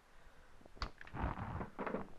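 A sharp click about a second in, then irregular scraping and handling noises as electrical wire is cut and worked with a hand tool.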